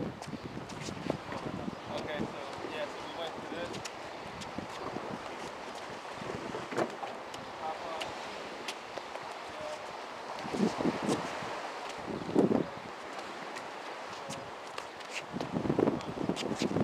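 Wind on the microphone over the light scuffs and slaps of a barehanded sparring match on concrete: sneakers shuffling and hands striking and grabbing, as short clicks. A few short voice sounds come about two-thirds of the way in.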